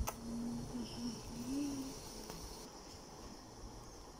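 Quiet room noise, with a single click at the start and a faint, distant voice-like hum during the first two seconds.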